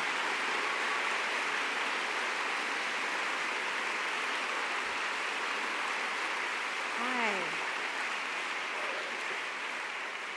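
Large audience applauding steadily, dying away near the end. A single voice calls out briefly about seven seconds in.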